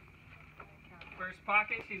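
Faint background hum with a few small ticks, then people talking from about a second in.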